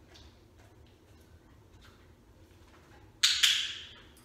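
Quiet, then about three seconds in two short, loud snorts from a German Shepherd dog.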